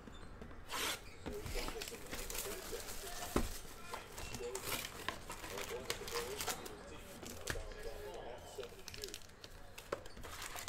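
Plastic shrink wrap being torn off a cardboard trading-card hobby box and crinkled in the hand, with scattered short tearing and rustling noises and the cardboard lid being handled.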